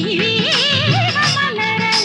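Tamil film song: a woman's voice singing a wavering, ornamented melody over instrumental accompaniment with a regular percussion beat.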